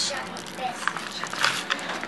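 Plastic packaging crinkling and rustling in the hands, with a few short, sharp crackles.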